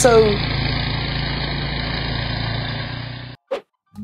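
Snowblower engine running steadily, cutting off suddenly a little over three seconds in.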